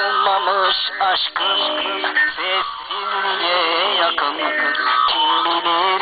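A song in Zaza: a solo voice singing long, wavering, ornamented lines over steady, sustained instrumental backing.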